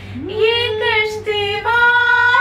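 A woman singing a Hindi song without accompaniment, sliding up into a held note and then holding long vowel notes with a slight vibrato.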